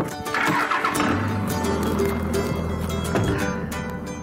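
Pickup truck engine starting and running with a low steady note for a couple of seconds, fading about three seconds in. Background music plays throughout.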